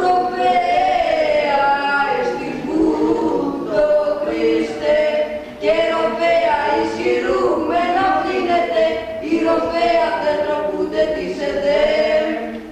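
A group of men singing Greek Orthodox Byzantine chant without accompaniment, in long sustained phrases with a brief break a little before halfway.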